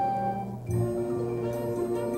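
Live pit orchestra playing incidental music in sustained notes. About two-thirds of a second in it moves to a new chord with a low accent.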